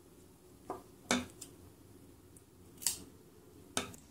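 Scissors snipping through acrylic yarn: a few short, sharp snips spread across the seconds, with quiet handling between them.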